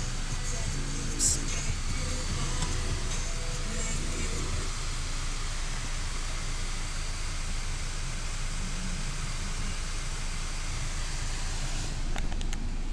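Car radio playing music, clearest in the first few seconds, over the steady low road and engine rumble of a moving Ford Focus sedan, heard inside the cabin. One short sharp click about a second in.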